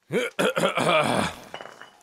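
A person's voice: a short vocal sound without words that starts suddenly and lasts about a second and a half, its pitch rising at the start.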